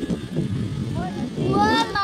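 People's voices talking and calling over a low outdoor rumble, the loudest voice rising in pitch in the second half.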